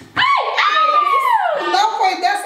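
A woman's drawn-out, high-pitched squeal that rises and then slides down over about a second and a half, a cry of suspense as a skewer goes into the game's balloon. The balloon does not pop.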